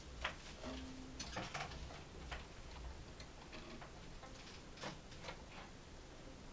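Quiet room with scattered small clicks and knocks as musicians settle: a pianist sitting down at a grand piano and a violist and violinist bringing their instruments up to playing position. A short low tone about a second in.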